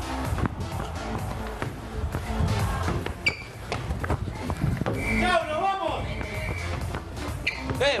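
A football thudding repeatedly on a ping-pong table and off players' heads during a head-tennis rally, over background music. A voice calls out briefly about five seconds in.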